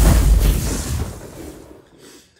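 Boom sound effect with a fiery rush, set to a flaming on-screen heat-rating number. It hits suddenly with a deep rumble and fades away over about a second and a half.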